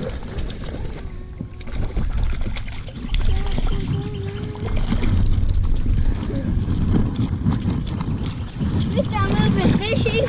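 A hooked trout splashing at the water's surface as it is reeled in on a spinning reel, over wind rumbling on the microphone. A voice comes in near the end.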